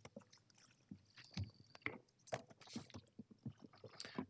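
Faint, irregular knocks, clicks and rustles of a person walking up to a lectern microphone and settling there, over quiet room tone.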